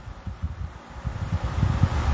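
Low, uneven rumbling noise picked up by a clip-on microphone, growing louder toward the end.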